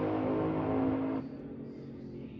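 Drag race car's engine at full throttle running away down the strip, with a steady pitch, then cutting off abruptly a little over a second in.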